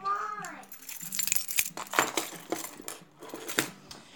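A bunch of keys jangling, with a string of small sharp metal clicks as a pepper spray keychain is unclipped from the key ring.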